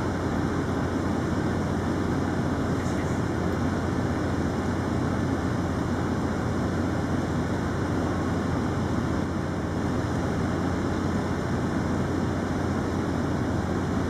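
Steady low mechanical rumble with a constant hum underneath.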